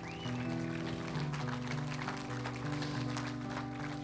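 Soft church music: slow, held chords on a keyboard that change every second or so, with faint scattered clapping over them.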